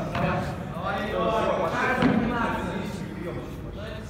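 Men's voices calling out, echoing in a large indoor hall, with a single thud of a foot kicking a football.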